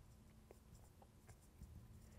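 Near silence with a few faint scratches and taps of a marker writing on a glass lightboard.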